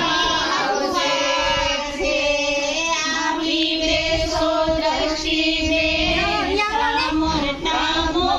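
Women's voices singing a traditional Gujarati ceremonial folk song together, with long held notes.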